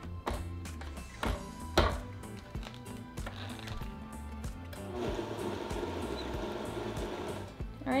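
Countertop blender grinding dried herbs and cinnamon in a small blending cup. It starts about five seconds in and runs steadily for nearly three seconds before stopping. Before that come a few clicks and knocks as the cup is set on the base, over background music.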